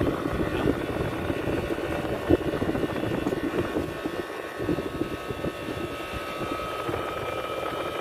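Window-type air conditioner running with its compressor and fan on, a steady mechanical hum with a thin high tone over it. A single short knock about two seconds in.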